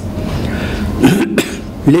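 A man coughing: a rough throat noise first, then two sharp coughs in quick succession about a second in.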